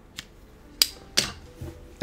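Hands working at long hair: a few short, sharp clicks and rustles, the loudest two a little under a second and just over a second in.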